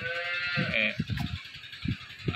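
A farm animal bleats once, a single long high-pitched call at the start, followed by softer low rustling.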